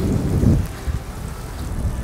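Wind buffeting the microphone of a handheld camera while riding a bicycle: a low, uneven rumble, strongest about half a second in.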